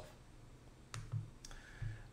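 Two soft computer mouse clicks, about half a second apart, around the middle of a quiet pause.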